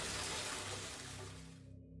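Water in a bathtub, a steady rush like a running tap, fading away and cutting off sharply about three quarters of the way through, leaving a faint low music bed.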